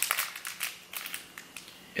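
Plastic candy wrapper crinkling as it is handled and opened, a quick run of small crackles in the first second that thins out toward the end.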